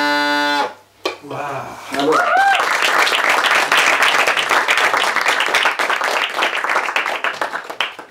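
Bagpipes stop playing about half a second in. After a brief cheer, a small audience applauds for about five seconds, dying away near the end.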